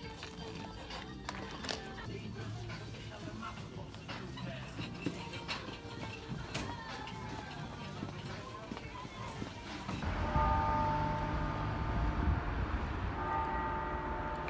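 Supermarket background of in-store music, distant voices and scattered clatter. About ten seconds in it changes to an outdoor rumble of traffic with church bells ringing over it in steady held tones.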